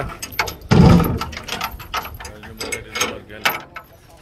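A heavy thump about a second in, followed by a run of scattered clicks, knocks and light rattles.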